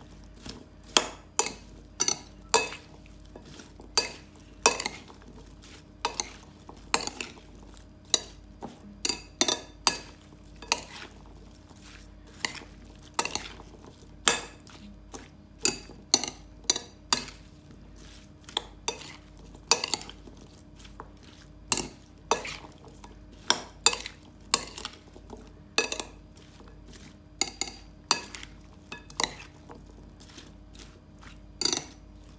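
Metal spoon mixing a chopped fruit and vegetable salad in a glass bowl, clinking sharply against the glass at an uneven pace, about one to two knocks a second, with the soft rustle of the wet pieces being turned.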